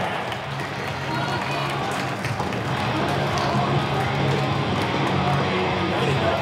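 Music playing over a crowd applauding and cheering, with a steady low bass tone underneath.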